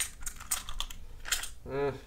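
A plastic coin tube of silver half dollars being handled and its cap worked off: a quick run of light, sharp plastic clicks and rattles in the first second, then one more click shortly after.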